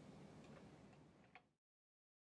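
Near silence: faint room tone with a few small ticks, the last and clearest about one and a half seconds in, then the sound cuts off to dead silence.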